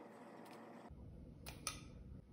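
Faint handling sounds of a plastic measuring spoon and sugar container: two light clicks close together about a second and a half in, over a low rumble.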